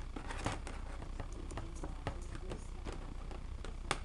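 Handling noise: faint rustling and scattered small clicks as loose wires and test leads are moved about by hand, over a low steady hum.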